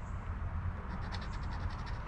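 A coin scratching the latex coating off a scratch-off lottery ticket in quick, soft rasping strokes, uncovering a number.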